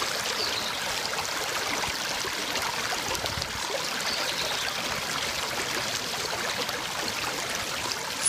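Shallow creek water running steadily over stones and pebbles.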